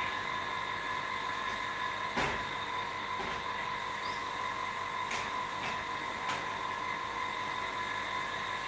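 Steady room noise with a thin, steady high whine, broken by a few faint knocks, the clearest about two seconds in.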